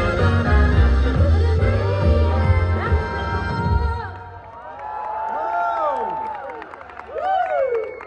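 Live grand piano and a woman singing through the stage PA, the song ending about four seconds in, followed by audience cheering and whoops.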